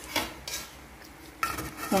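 Aluminium pot lid being handled, clanking against the pot: a sharp clank just after the start, another about half a second in, and a longer metallic clatter near the end.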